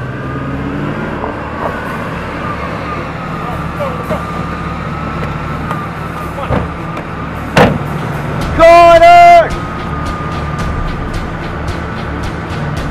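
Ford Mustang GT convertible's engine running as it pulls in and stops. There are two sharp knocks, like car doors, a little past halfway. About three-quarters of the way through comes a loud, flat car-horn blast of about a second, the loudest sound.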